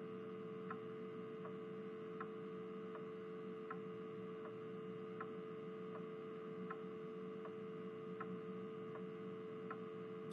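Faint steady hum, like mains hum, with a soft tick repeating about every three-quarters of a second.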